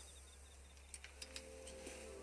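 Near silence: quiet room tone with a low steady hum and a few faint clicks about a second in.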